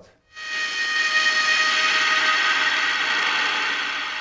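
Haken Continuum Fingerboard playing a sustained synthesized tone, a hiss with a steady pitched buzz of evenly spaced overtones, starting about a third of a second in. The finger-pressure variation being played does not come through audibly.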